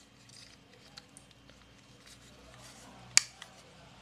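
Small plastic clicks and handling of a white plastic door/window entry alarm unit, with one sharp plastic snap about three seconds in as its battery cover clicks shut over the LR44 button cells.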